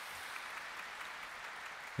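Audience applauding in a concert hall, soft and steady.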